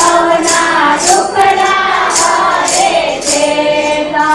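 A group of voices singing a Hindu devotional bhajan together, with a steady beat of sharp percussion strokes about twice a second.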